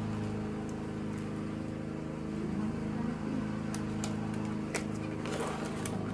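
Steady low hum of a running motor, holding one even pitch. A few light clicks and rustles of soil and plastic being handled come in the second half.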